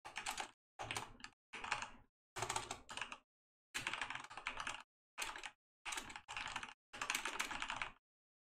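Typing on a computer keyboard: about eight quick runs of keystrokes, each under a second long, with short silent gaps between them.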